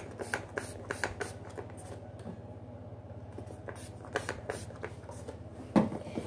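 Brush strokes through a toy unicorn's synthetic hair close to the microphone: a series of short, scratchy rustles with a brief pause about halfway through.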